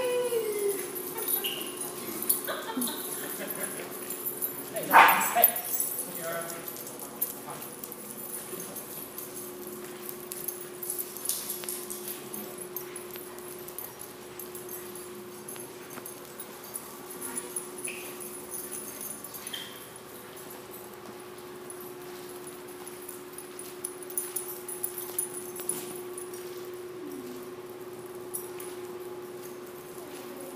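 Several dogs playing together, giving scattered short barks, yips and whimpers, the loudest call about five seconds in. A steady low hum runs underneath.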